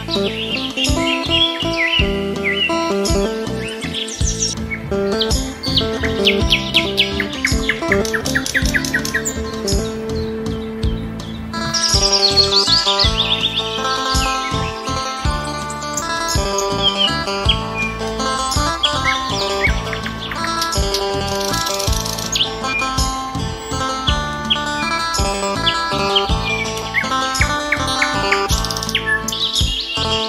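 Instrumental music with birdsong laid over it: clear whistled chirps and quick trills above held musical notes.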